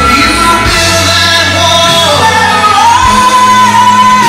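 Soft-rock ballad, a sung vocal line over full band accompaniment, rising near the end into one long held note.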